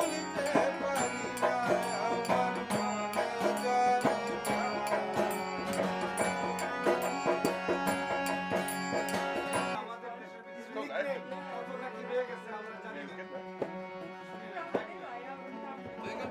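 Bengali folk song played live on acoustic guitar and harmonium with a man singing, a dhol drum and mandira hand cymbals keeping a steady beat. About ten seconds in the percussion stops abruptly and the music goes on more quietly, with a voice over guitar and harmonium.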